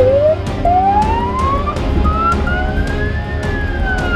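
Police car siren wailing: one slow rise in pitch over about three seconds, then falling near the end, over a low rumble.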